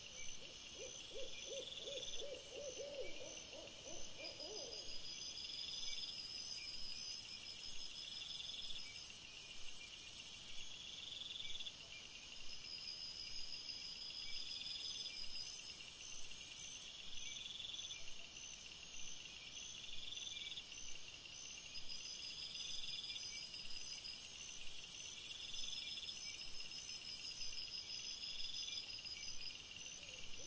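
A night chorus of insects, high-pitched chirps and buzzes repeating in several overlapping rhythms, swelling and dropping in loudness several times. Near the start a low, rapidly pulsed trill-like call from an animal runs for about four seconds.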